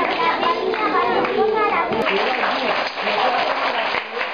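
Several children talking over one another in a room, indistinct chatter with no single clear voice.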